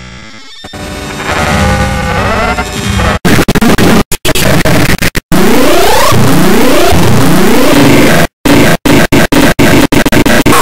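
Harshly distorted, clipped music-and-effects remix, a loud cacophony that swells in about a second in and then drops out abruptly again and again. Repeated rising pitch sweeps run through its middle.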